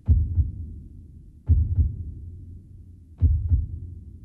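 Slow, deep heartbeat sound effect: three low double thuds, each a pair of beats, about one and a half seconds apart.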